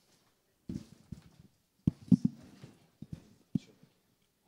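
Irregular knocks and bumps on a desk microphone, about seven in all, the loudest cluster around two seconds in: handling noise as the microphone is touched and moved.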